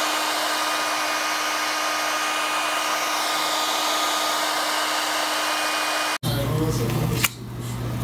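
Handheld blow dryer running steadily to dry wet paint: a whoosh of air with a steady whine. It cuts off suddenly about six seconds in.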